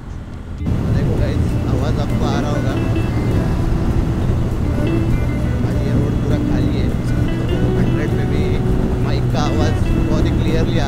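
A motorcycle running at about 100 km/h, its steady engine drone under loud rushing wind noise that jumps louder about a second in.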